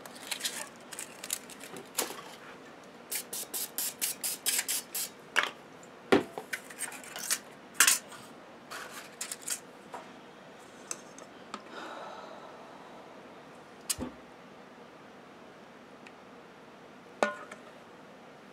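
Foil and paper cupcake liners crinkling as they are pulled apart and pressed into a metal muffin pan, including a quick run of crinkles early on. A few sharp clanks of metal bakeware come through as the pan and the steel mixing bowl are handled.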